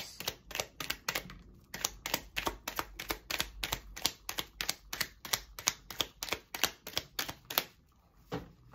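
A deck of tarot cards being shuffled by hand, the cards slapping together in a steady run of sharp clicks, about four or five a second.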